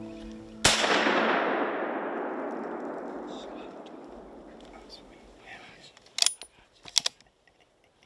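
A single rifle shot fired at a wild hog, its report rolling away through the woods and fading over about four seconds. Two sharp clicks follow near the end.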